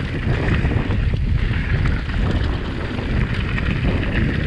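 Wind buffeting the microphone over mountain bike tyres rolling on loose gravel, with scattered small clicks and rattles from the bike on the rough track.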